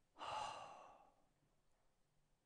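A man's single sigh-like breath into a close microphone, starting about a quarter second in and fading within a second.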